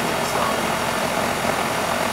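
York 3-ton microchannel central air conditioner's outdoor condensing unit running steadily, compressor and condenser fan on, while it runs low on R-410A refrigerant from a leak.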